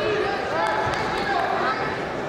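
People's voices calling out in a large, echoing hall, over a steady background of arena noise.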